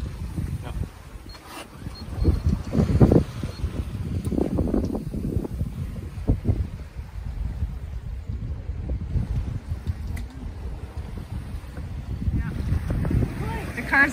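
Wind buffeting the microphone on a sailboat under way, a gusty low rumble with the rush of the sea, loudest about three seconds in.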